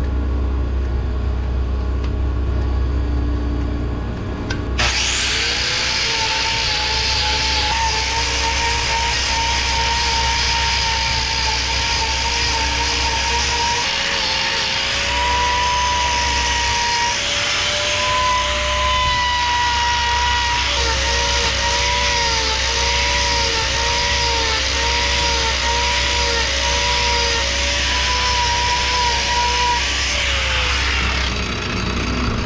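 Handheld angle grinder with a hoof-trimming disc, starting up about five seconds in and grinding down the horn of a cow's hoof claw. Its motor whine dips again and again as the disc bites, then winds down at the end. A steady low hum runs underneath throughout.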